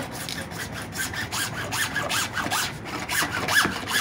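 Hand hacksaw cutting through white PVC pipe, in quick, even back-and-forth strokes, several a second, with a short squeak from the blade on the plastic on many strokes.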